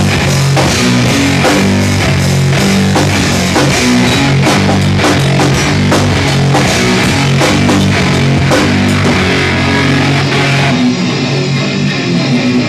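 Live heavy rock band playing loud, with distorted electric guitars, bass and a drum kit hitting steadily. Near the end the drums stop and the guitar plays on alone.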